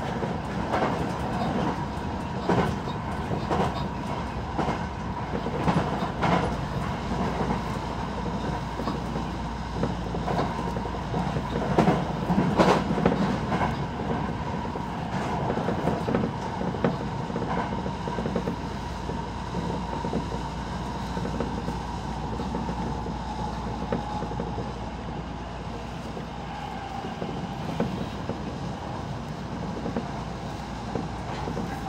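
Electric commuter train running at speed, heard from inside the front car: the wheels click over points and rail joints, often in the first half with the loudest clatter about twelve seconds in, then fewer, over a steady running hum.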